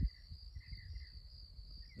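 Quiet outdoor ambience: insects trilling steadily at a high pitch, with a low, uneven wind rumble on the microphone.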